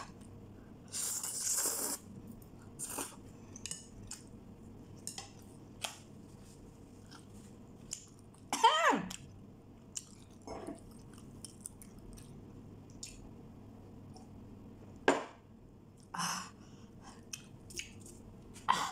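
A person slurping and chewing spicy instant noodles, with wet mouth clicks and smacks: a slurp of about a second near the start, then chewing. About halfway comes a short cry falling in pitch, the loudest sound, and a few sharp breaths or puffs follow, a reaction to the chili heat of the noodles.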